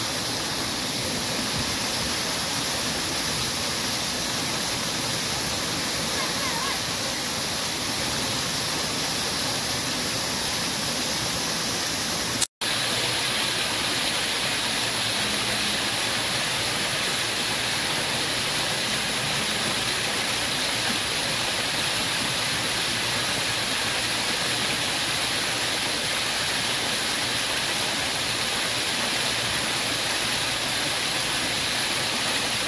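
Fountain jets splashing into a pool: a steady rush of falling water. About twelve seconds in the sound breaks off for an instant with a click, then the same rush resumes.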